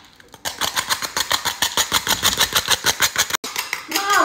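A knife rapidly scraping the charred surface off burnt toast: a fast, even rasping of about eight or nine strokes a second that stops abruptly near the end.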